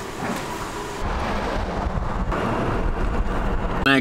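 Minivan driving: its engine runs as it pulls away, then the engine and road rumble get louder from about a second in and stay steady.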